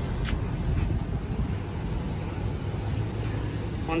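Steady low rumble of an idling car engine, with two faint clicks in the first second.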